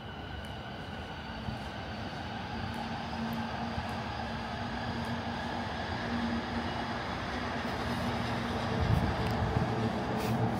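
Electric commuter train running out of sight, its rolling noise and steady hum growing gradually louder and peaking near the end.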